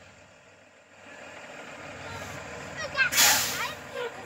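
School bus engine idling, then a sharp hiss of compressed air about three seconds in, lasting about half a second: the bus's air brakes being released as it gets ready to pull away.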